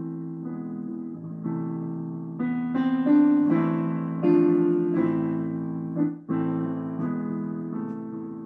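Digital piano playing a slow prelude: held chords, with a new chord struck every second or so, loudest around the middle.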